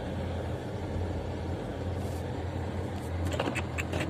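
Car running at low speed over packed snow, heard from inside the cabin: a steady low engine hum with tyre noise, and a few short crackles near the end.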